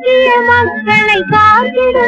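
A woman singing a 1950s Indian film song, holding long notes with vibrato over a steady drum beat of about two strokes a second.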